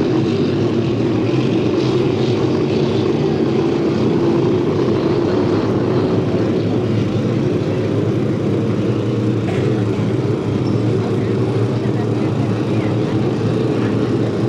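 Several 350-class inboard racing hydroplanes with 350 cubic-inch V8s running at speed together, a steady engine drone that holds at an even level throughout.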